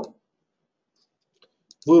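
Near silence with a single faint computer mouse click about one and a half seconds in.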